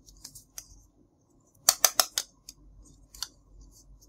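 Hollow plastic toy food pieces clicking and tapping against each other in the hands: scattered light ticks, then a quick run of about five sharp clicks about two seconds in.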